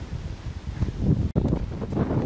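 Wind buffeting the microphone: an uneven, gusty low rumble, broken by a sudden brief gap shortly after halfway.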